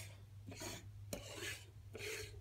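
Small plastic toy figurines being slid by hand across a dresser top, giving a few short, faint scrapes over a low steady hum.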